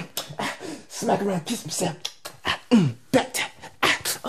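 A man's voice making short wordless vocal sounds: falling cries and breathy, percussive mouth noises in quick bursts.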